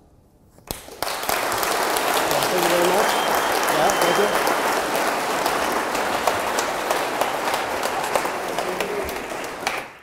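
Audience applauding, starting about a second in after a short hush and easing off near the end.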